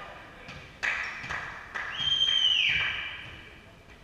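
A volleyball being struck twice during a rally in a reverberant gym hall, sharp hits about a second apart, followed by a high, steady squeal of nearly a second.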